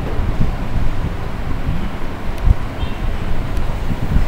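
A low, uneven rumble of wind buffeting the microphone.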